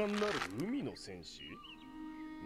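Subtitled anime dialogue: a cartoon character's voice in swooping, rising-and-falling pitch over soft background music.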